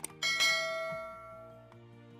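Subscribe-button sound effect: a mouse click, then a bright bell ding that rings out and fades over about a second and a half. Soft background music plays underneath.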